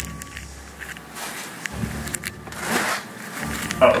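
Rustling and scraping of a cardboard mystery box being handled and lifted down from a shelf, with scattered small clicks and two brief rustles.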